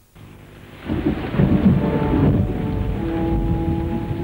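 A loud, low rumble with a rain-like hiss builds about a second in, the kind of thunderstorm sound laid under a film's opening. Held music notes join it from about the middle, one steady tone standing out near the end.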